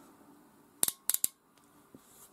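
Ratcheting connector crimper clicking as it is handled: a sharp click a little under a second in, then a quick run of three more.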